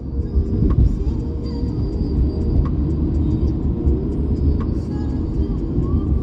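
Road noise inside a moving car's cabin: a steady low rumble of engine and tyres on a slush-covered road, with a few faint knocks.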